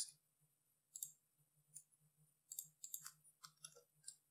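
Faint clicks of a computer mouse and keyboard: single clicks about a second in and just before the halfway point, then a quick run of clicks in the second half.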